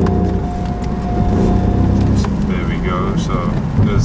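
Turbocharged three-cylinder 1.0-litre Ford EcoBoost engine running under way, heard from inside the cabin on the standard airbox, with no turbo noise to be heard. A steady high tone runs through the first half and cuts off about halfway, and a voice comes in over the engine in the second half.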